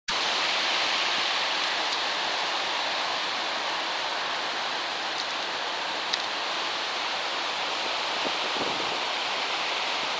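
Sea waves breaking and washing up a pebble (shingle) beach, a steady rushing hiss.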